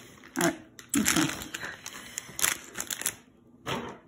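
Foil LEGO minifigure blind-bag packets crinkling and crackling in irregular bursts as they are handled.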